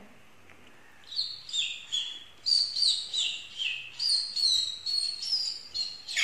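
A person whistling an imitation of a bird's call. After about a second of quiet come quick, high chirping notes, about three a second, each falling in steps in pitch, running on to the end.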